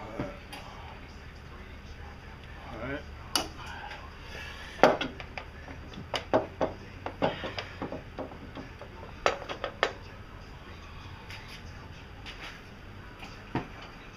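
Metal tools clinking and knocking against engine parts while a bolt is worked loose from a power steering mounting bracket. The knocks come at irregular intervals, the loudest about five seconds in, with a run of them between six and eight seconds and another pair near ten seconds.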